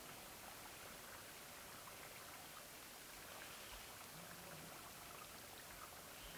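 Near silence: a faint, steady hiss.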